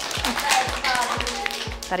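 A group of children clapping their hands in quick, uneven claps. Background music with a steady beat plays underneath.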